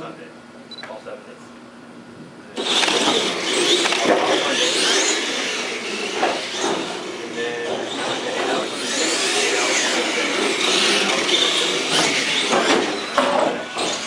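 Electric radio-controlled Clod Buster monster trucks launch suddenly about two and a half seconds in and run flat out down the track, mixed with loud shouting and cheering from the people watching.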